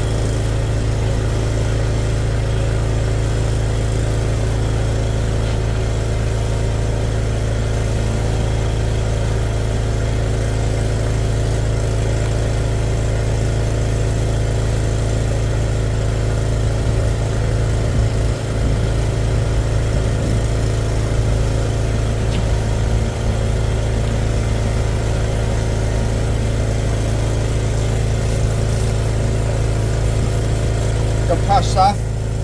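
Drain jetter's engine running steadily at a constant pitch while it pumps water through the jetting hose into a blocked drain.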